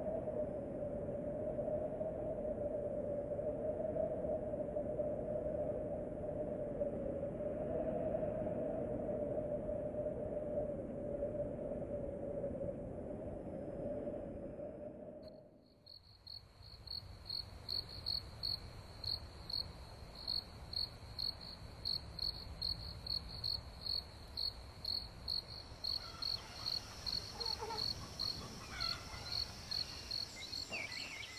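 For about the first half, a steady hum with a droning tone, which cuts off suddenly. After that, insects chirp in a high, even pulse of about two chirps a second, with a second, higher insect call joining and faint wavering calls near the end.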